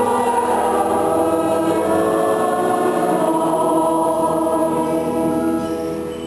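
Live choir singing a liturgical hymn in sustained, held notes, softening slightly near the end.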